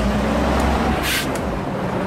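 Tatra 815 rally truck's air-cooled diesel engine running steadily, with a brief hiss about a second in.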